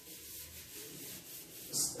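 Blackboard duster rubbing across a chalkboard, wiping off chalk writing in faint, repeated strokes.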